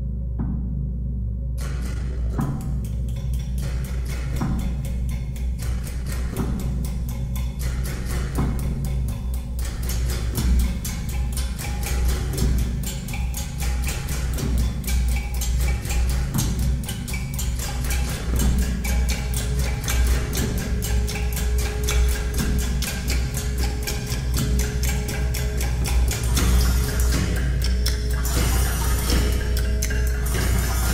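Layered multitrack performance on a homemade percussion box amplified with piezo pickups: coil springs and metal rods struck, plucked and strummed, giving a deep resonant low drone under metallic strikes. The strikes come about once a second at first, then from about ten seconds in thicken into a dense continuous clatter.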